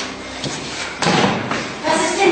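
A sharp thump about a second in, like something put down hard on a desk counter.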